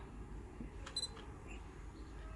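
Camera autofocus driving briefly about a second in: a faint short mechanical whir and clicks from the LA-EA4 adapter's screw-drive focus motor turning the Zeiss Sonnar 135mm f/1.8 lens, with a short high focus-confirmation beep.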